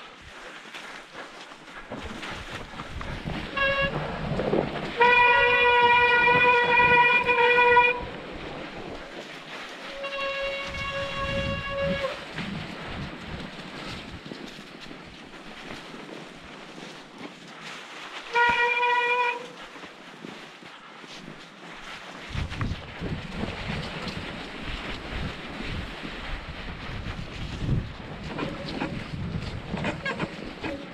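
Mountain-bike disc brakes squealing in a steady, high whistle-like tone while braking on a wet, snowy descent. There are four squeals: a short one about three and a half seconds in, the longest and loudest from five to eight seconds, another from ten to twelve seconds, and a brief one near nineteen seconds. Between them come the rush and rattle of the bike rolling through slush, with wind on the microphone.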